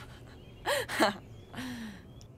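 Short wordless vocal sounds from a young person: two quick high-pitched voiced cries about two-thirds of a second in, then a breathy sound falling in pitch near the end.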